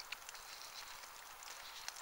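A man chewing a mouthful of bread bun: a few faint, soft mouth clicks over a low steady hiss.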